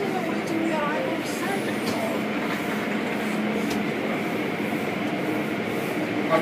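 Automatic car wash heard from inside the car: water spray and spinning brushes and hanging cloth strips beating on the car body, over the steady running of the wash machinery.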